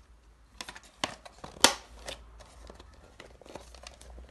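Plastic parts of a Dyson cordless vacuum's motorised brush head being handled and pressed together: a series of light plastic clicks and taps, the sharpest about one and a half seconds in.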